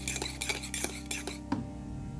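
A metal spoon stirring in a ceramic mug, clinking and scraping against the sides in quick strokes that stop about a second and a half in. Quiet background music plays under it.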